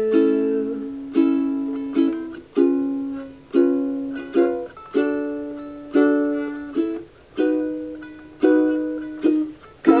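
Solo ukulele strumming chords, about one strum a second, each chord ringing out and fading before the next.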